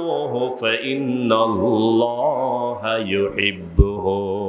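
A man's voice chanting in a drawn-out, melodic sermon intonation through a microphone, the pitch wavering on long held notes. A brief low thump comes near the end.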